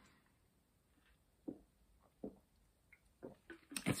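A person drinking: two faint, short swallows about a second and a half and two seconds in, then small mouth and breath sounds near the end.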